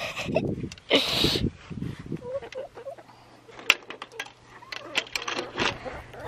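Backyard chickens giving a few soft clucks, among rustling and scattered light clicks, with a louder burst of rustling about a second in.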